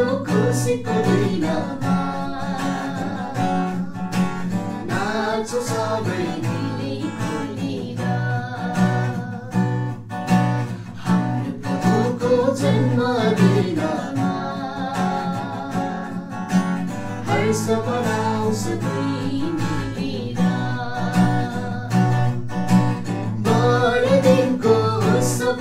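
An acoustic guitar strummed steadily while a man and a woman sing a Christmas carol together.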